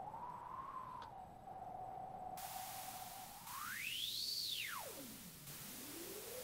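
Elektron Digitakt's resonant filter ringing on a white-noise sample as its cutoff is swept by hand: a whistling tone over faint hiss that holds around 800 Hz to 1 kHz, then glides up high about four seconds in, swoops down low and rises back toward the middle.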